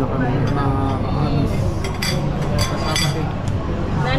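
Restaurant table din: several people talking over a steady background of voices, with plates, glasses and cutlery clinking a few times in the middle.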